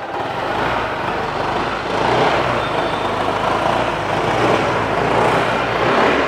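A Honda PCX 160 scooter's 160 cc single-cylinder engine starts and runs quietly at idle, a little louder from about two seconds in.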